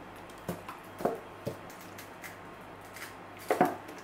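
Ketchup squeezed from a plastic squeeze bottle into a plastic bowl of sorrel liquid: several short squirts and clicks, the loudest near the end.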